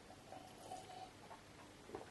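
Near silence: faint room tone with a few soft small sounds as a man drinks from a glass.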